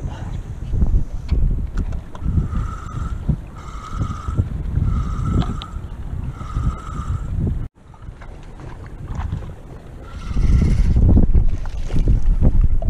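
Wind buffeting the microphone and choppy water around a small fishing boat while a spinning reel is cranked. Four short higher squeaks come about every second and a half in the middle, and the noise grows louder near the end.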